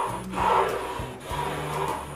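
Pencil and fingertip rubbing along the edge of a wooden board while a guide line is drawn, a dry scraping that swells in a few strokes.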